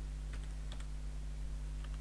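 A few light keystrokes on a computer keyboard, typing code, over a steady low electrical hum.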